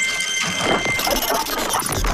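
Loud, dense, noisy electronic sound effects of a broadcast break bumper, with no speech.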